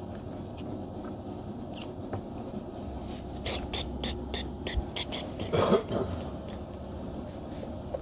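Small plastic toys being handled: a quick run of light clicks and taps about halfway through, then a brief pitched sound that rises and falls.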